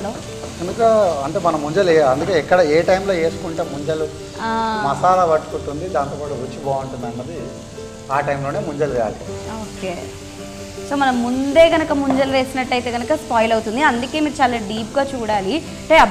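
Chicken sizzling as it fries in a nonstick kadai over a gas flame, stirred with a wooden spatula, under voices talking.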